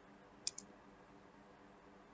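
Near silence broken by a single computer mouse click about half a second in, heard as a press and release in quick succession, as a slide is advanced.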